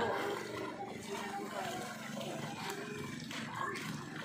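A group of men talking and calling out over one another, several voices overlapping.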